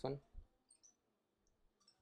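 A few faint, short clicks of a computer mouse selecting text on screen, after the end of a spoken word.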